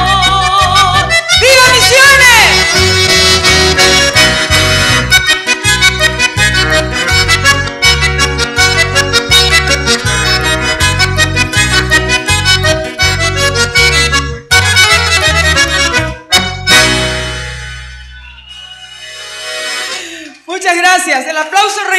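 Live accordion-led folk band with guitars and a pulsing bass beat playing, with a brief high sliding note about a second and a half in. The tune ends with final chords about sixteen seconds in and the sound dies away.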